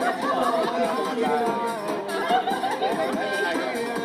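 Several people talking at once over background music.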